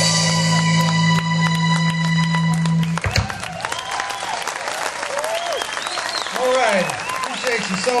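A live blues band holds its final chord over a sustained bass note, cut off sharply about three seconds in. The crowd then applauds and cheers.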